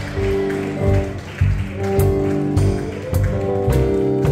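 Instrumental church band music after the song: held keyboard chords over electric bass notes that change about every half second, without drums or singing.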